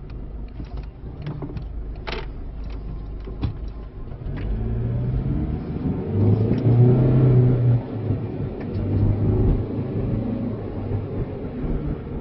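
Car engine and road noise heard from inside the cabin, with a few light clicks in the first few seconds. About four seconds in the engine hum grows louder and holds steady as the car drives past.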